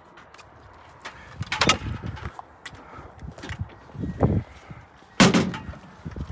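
Scattered knocks and clatter of tools and gear being handled around a pickup truck bed, with one loud bang about five seconds in.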